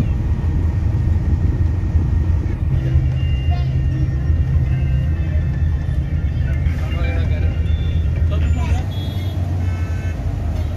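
Steady low rumble of a moving bus heard from inside the passenger cabin, engine and road noise together, with faint voices over it in the middle.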